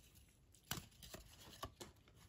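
Near silence, with a few faint clicks as 1995 Topps Embossed baseball cards are pulled apart by hand from a stack where they have stuck together ('bricking').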